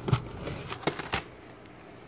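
Handling noise: four short, light knocks and clicks in the first second or so, as a laptop motherboard and the phone filming it are moved about on the bench.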